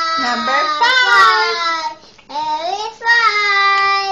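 A young child vocalizing in a high sing-song voice: two long drawn-out phrases, the second starting about two seconds in.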